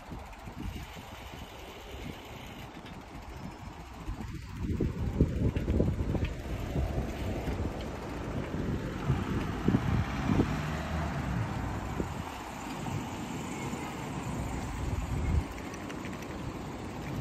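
Wind buffeting the microphone of a camera riding along on a bicycle, a gusty low rumble that grows louder about four to five seconds in, over faint street noise.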